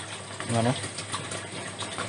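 Steady rush of water circulating through an NFT hydroponic pipe system, with a faint low hum underneath.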